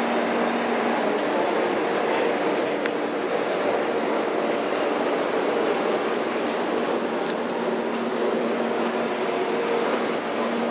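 Steady rushing noise and hum from a double-deck passenger train standing at the platform, with a faint low hum tone that comes and goes.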